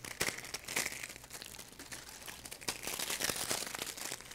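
A dry, dead branch crunched and snapped in the hand close to a microphone: a dense run of brittle crackling and small snaps. Its crunchiness is the sign of wood long dead and dried out.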